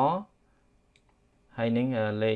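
A man speaks at the start and again near the end. Between the phrases there is a single faint computer mouse click about a second in.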